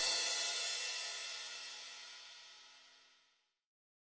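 The last chord of the piece ringing out on electric guitar together with a cymbal, dying away over about three seconds.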